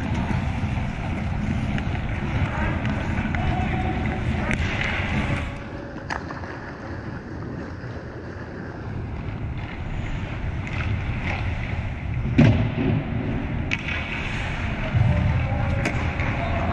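Ice hockey rink sounds: a steady low rumble with skate blades scraping the ice and a few sharp clacks of sticks and puck, the loudest about twelve seconds in.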